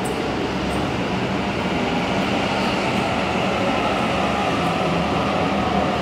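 Sydney Trains double-deck electric train moving along the station platform: a steady rumble of wheels and running gear, with a faint whine from the motors.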